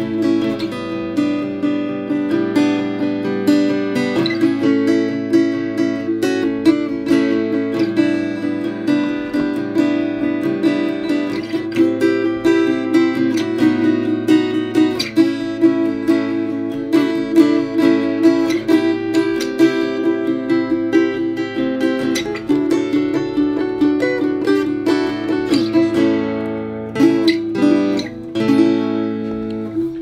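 Gretsch G9500 Jim Dandy parlour acoustic guitar, a small all-laminate basswood body with steel strings, played fingerstyle: a continuous run of picked notes over a sustained low bass, with a boomy blues-box tone.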